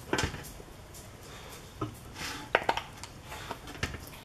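A few light knocks and clicks as a silicone mold is handled and flexed against a metal baking sheet, the loudest cluster coming in the third second.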